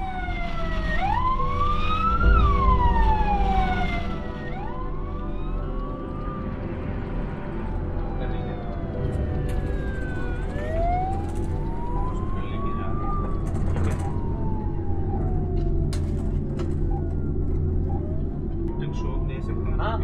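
Ambulance siren wailing in slow rises and falls of a few seconds each, over a steady low vehicle rumble.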